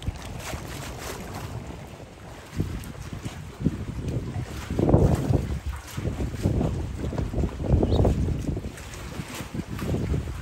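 Wind buffeting the microphone: an uneven low rumble that turns into stronger gusts from about two and a half seconds in.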